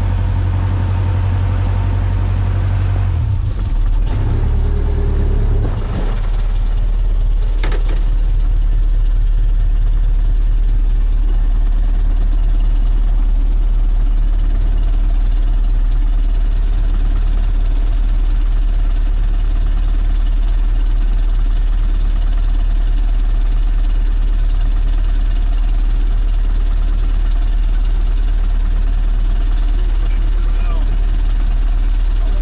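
Small wooden fishing boat's inboard engine running steadily at low revs, a loud low drone. Between about three and six seconds in, its note shifts and settles lower, and a single short knock sounds a couple of seconds later.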